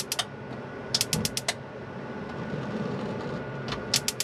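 Three-burner motorhome gas hob's spark igniter clicking rapidly as a burner knob is pressed in and turned to light the gas. The clicks come in short runs of about ten a second: one at the start, another about a second in, and a third beginning near the end.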